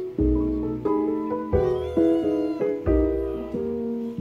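Background music with a slow, steady pulse of piano-like notes and bass. Over it a nine-week-old kitten meows, one high wavering call about two seconds in, pestering to be played with.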